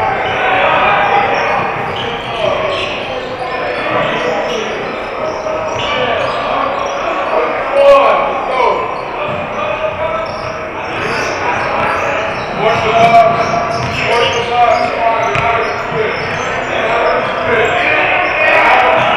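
Basketball game on a hardwood gym court: the ball bouncing, sneakers squeaking in short glides, and players calling out, echoing in a large hall. The squeaks are loudest about eight seconds in.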